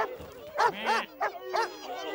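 Cartoon ducks quacking: a run of short, arching quacks from several birds, some overlapping.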